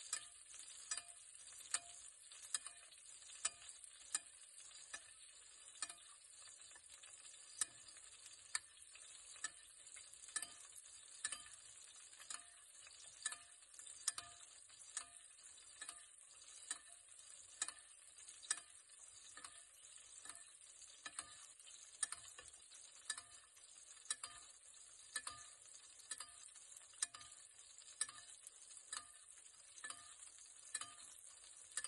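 Butter sizzling in a stainless steel frying pan while a metal spoon bastes a steak, the spoon clinking against the pan about once or twice a second.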